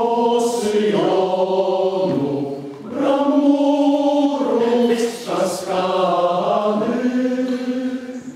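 Male choir singing sustained chords, in two phrases with a short break for breath about three seconds in.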